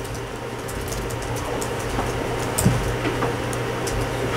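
Steady low room hum with faint scattered ticks and rustles from pens and papers on the tables.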